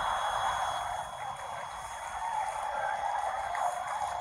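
A large audience laughing and clapping, a steady crowd noise.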